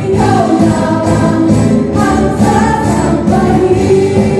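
Live band rehearsal: several female voices singing together into microphones over acoustic guitar, bass guitar, keyboard and drums, playing continuously.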